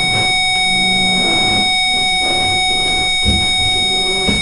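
Electronic buzzer sounding one loud, steady buzzing tone at a single pitch.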